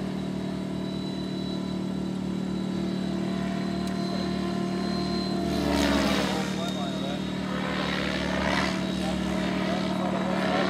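Thunder Tiger G4 radio-controlled helicopter in flight, its engine and rotors running steadily, then getting louder and sweeping in pitch as it passes close overhead about halfway through.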